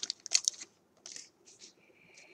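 Trading-card pack wrapper crinkling as it is torn open and handled. There are several short crackles in the first half-second, then a few fainter ones about a second in.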